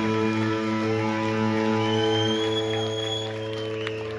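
Live rock band with electric guitars and bass holding a long sustained chord, the notes ringing steadily without new strums and easing off slightly near the end. A thin high tone rises over it for a second or so in the middle.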